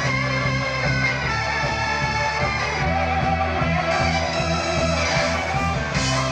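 Live band playing loud amplified music led by electric guitar, over bass and drums with a steady beat.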